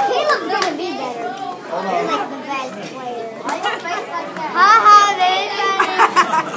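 Group of children chattering and calling out in a room, with one child's voice rising loudly about four and a half seconds in.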